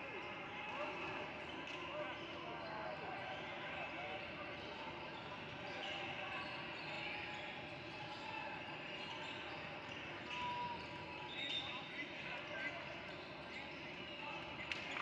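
Gymnasium ambience during a break in play: indistinct voices and chatter echoing in the hall, with a basketball bouncing on the hardwood floor now and then.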